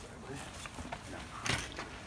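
Mountain bike tyres rolling over a granite slab and dry leaf litter as the rider comes closer, with a short sharp scrape about one and a half seconds in.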